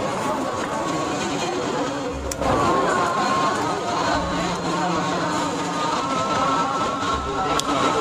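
Indistinct chatter of a crowded room, with a couple of short clicks, one about two and a half seconds in and one near the end.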